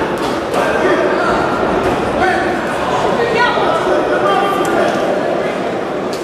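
Several people's voices shouting and talking over one another, echoing in a large hall, with a few faint knocks.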